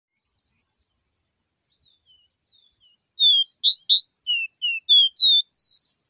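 A caged caboclinho, a Sporophila seedeater, singing: a few faint notes, then a loud run of clear whistles about three seconds in, two quick upsweeps followed by short slurred notes that climb to a higher final whistle.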